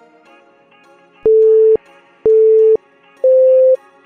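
Three loud electronic beeps, each about half a second long and a second apart, the third higher in pitch: a workout-timer countdown marking the end of a timed stretch. Soft background music plays underneath.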